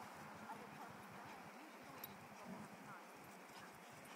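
Near silence: faint outdoor ambience with a few soft ticks.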